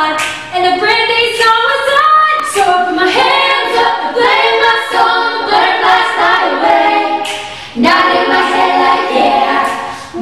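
A cappella group of young female voices and one male voice singing a pop song in harmony, with no instruments. The voices break off briefly about three-quarters of the way through, then come back in together.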